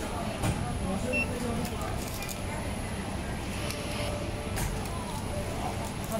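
Busy supermarket food-counter hubbub: indistinct voices over a steady low hum, with a few light clicks and a brief faint beep about a second in.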